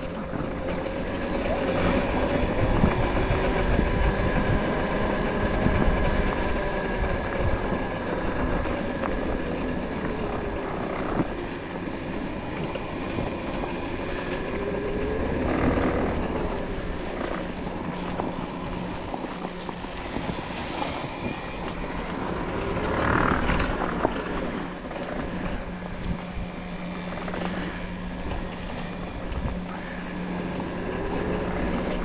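Electric off-road motorbike's motor whining as it is ridden, its pitch rising and falling several times with speed, over a steady low rumble from the rough trail.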